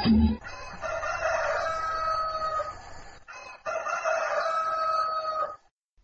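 A rooster crowing twice, two long held calls of about two seconds each, the first about a second in and the second about halfway through.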